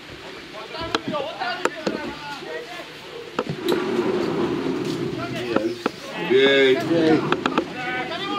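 Footballers' voices shouting and calling across the pitch, with one drawn-out shout about six seconds in. A few sharp knocks of the ball being kicked sound through it.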